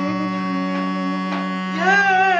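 Armenian duduk playing a slow melody over a steady low drone: a long held note, then a rising glide up to a higher note with vibrato near the end.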